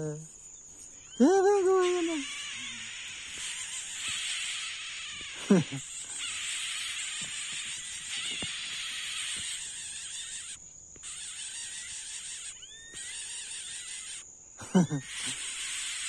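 Steady high-pitched insect buzzing. A few faint, short rising peeps near the end come from smooth-billed ani nestlings gaping for food. A man's laugh comes about a second in.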